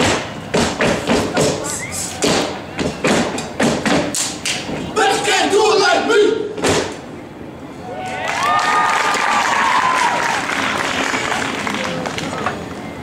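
Step team stepping: rhythmic stomps and hand claps and body slaps in a fast pattern, with a shouted chant about five seconds in and a final hit about seven seconds in. From about eight seconds in, the crowd cheers and screams.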